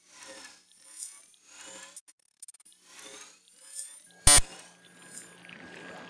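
Electronic sound design from a video-mapping soundtrack: synthesized whooshes with gliding pitches, repeating roughly every three-quarters of a second. Just past four seconds in comes a short, very loud electronic hit, after which a steady low drone with a thin high tone sets in.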